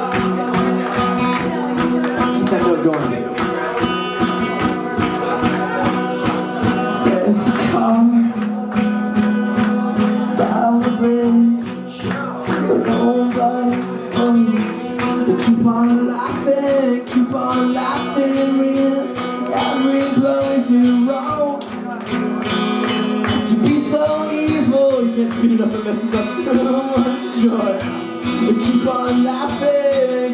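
Live music: an acoustic guitar strummed under a male lead singer.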